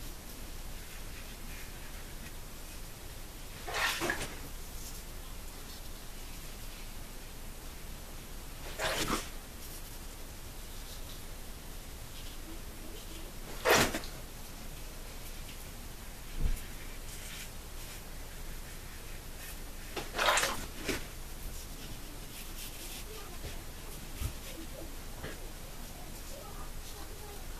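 Double-edge safety razor (Muhle R89 with a Laser Ultra blade) scraping through two and a half days of stubble on the second pass, across the grain: four short strokes a few seconds apart. Two brief low thumps fall between the later strokes.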